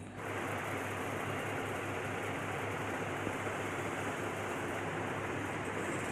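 Shower water running: a steady, even rush that starts suddenly and holds level.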